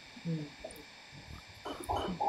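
Only speech: a woman's short 'mm' just after the start, a brief pause with faint room noise, then her talking again near the end.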